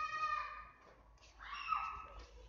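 A child's high voice calling out in two long drawn-out cries, the first at the start and the second about one and a half seconds in, ending in a falling slide.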